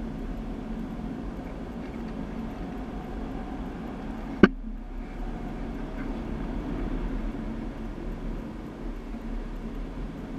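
Go-karts running on an indoor track: a steady engine drone that swells slightly about seven seconds in. A single sharp knock about halfway through is the loudest sound.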